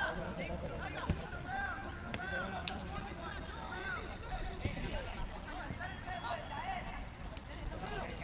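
Players' voices shouting and calling to each other across a football pitch, heard from a distance. Two sharp knocks of the ball being kicked come about a second in and just under three seconds in.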